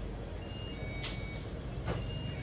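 A steady low rumble with a few faint, high electronic beep tones and two short clicks, one about a second in and one near the end.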